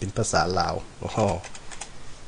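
A man speaking briefly, then a few computer keyboard key presses in the second half, as the Ctrl+Shift shortcut is pressed to switch the input language.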